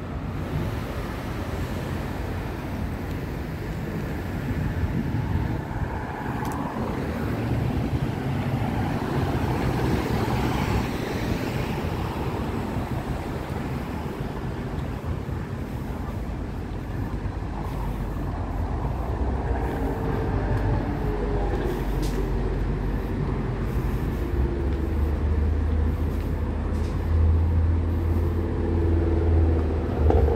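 City street traffic: a steady hum of cars passing on the road. In the second half a heavy vehicle's engine rumbles louder and closer.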